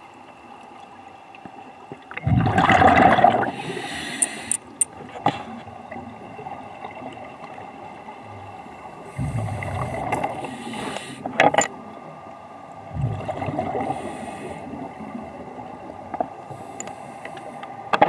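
Scuba regulator breathing heard underwater: three bursts of exhaled bubbles, about two, nine and thirteen seconds in, with hissing and a few sharp clicks between them.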